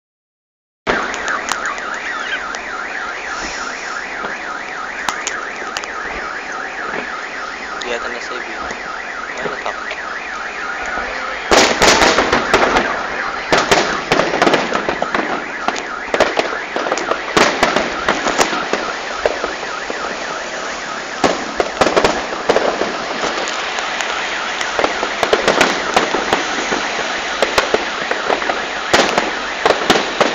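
Aerial fireworks bursting: a dense run of sharp bangs and crackles starts about a third of the way in and goes on to the end. Before that, a steady, rapidly pulsing sound fills the first third.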